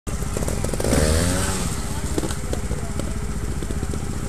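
Trials motorcycle engine running at idle, with a brief rise and fall in revs about a second in.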